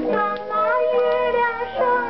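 Music: a woman singing a Chinese popular song with instrumental accompaniment, played from an old 1947 Pathé record.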